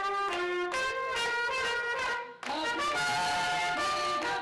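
Mariachi trumpet playing a melody of held notes, with a brief break a little past halfway before the music comes back in.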